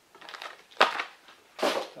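Unboxing packaging being handled: three short crinkling, crunching bursts. The loudest starts sharply a little under a second in.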